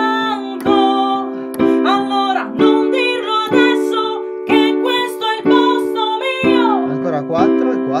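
Simple three-note chords on a digital piano, struck about once a second, with a woman singing the pop melody over them. The chord changes about two and a half seconds in and changes back near the end.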